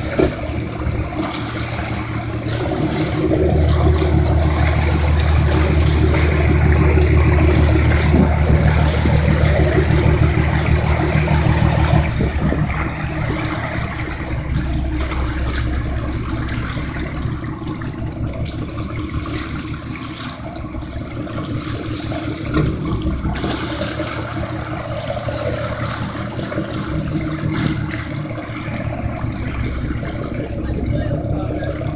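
A boat's engine running under a steady rush of water and wind noise. The low drone swells about three seconds in and eases back after about twelve seconds.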